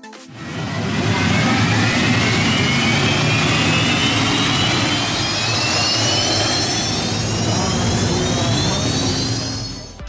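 Racing hydroplane boat powered by a helicopter turbine engine, running at speed. A loud, steady rush with a turbine whine that climbs slowly in pitch from about two seconds in.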